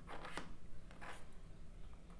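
A few faint taps and light rustles of a stiff oracle card being handled and set onto a small wooden card stand, over low room hum.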